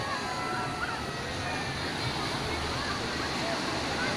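Ocean surf breaking over rocks at the shoreline: a steady rush of waves, with faint voices of people on the beach scattered through it.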